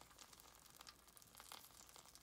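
Near silence with faint, scattered crackling: the juices of a freshly roasted chicken sizzling in its metal roasting pan.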